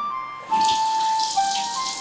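Kitchen tap running into a stainless-steel sink, starting about half a second in, as hands wash under it.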